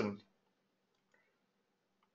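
The end of a spoken word, then near silence with a few faint clicks.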